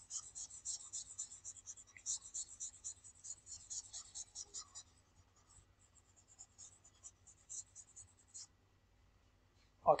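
Faint, rapid scratching of a stylus rubbing back and forth on a pen tablet as on-screen handwriting is erased. The strokes come thick and fast for about five seconds, then thin out and stop a little past eight seconds.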